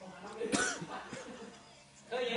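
A person's short cough-like vocal burst about half a second in, followed by brief quieter voice sounds.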